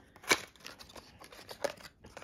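A small cardboard box being opened by hand: a sharp papery click about a third of a second in, then light rustling and a few faint clicks as the flap is pulled open.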